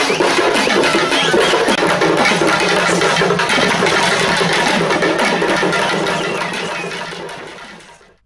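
Tamil folk drum ensemble playing: large frame drums (parai) and shoulder-slung barrel drums beaten in a fast, dense rhythm, fading out over the last two seconds.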